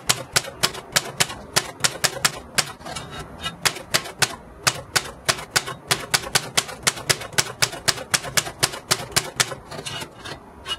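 Manual typewriter typing: its keys strike the paper in a steady run of sharp clacks, about five a second.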